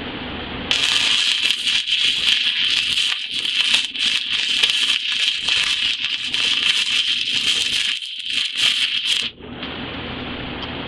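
Shielded metal arc (stick) welding arc crackling and hissing as tack welds are laid on beveled steel plate with a fast-freeze electrode. It starts about a second in and falters briefly near the end before cutting off.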